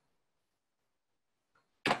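Near silence, then a single short, sharp noise just before the end that fades quickly.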